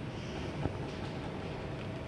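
Steady low rumble and hiss of background noise, with one faint click about two-thirds of a second in.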